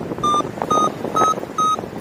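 Paragliding variometer beeping about twice a second, short high beeps edging slightly up in pitch, the sound it makes while the glider is climbing. Wind noise rushes underneath.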